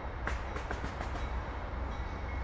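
Amtrak passenger train approaching from a distance, a steady low rumble, with a quick run of five or six sharp clicks in the first second.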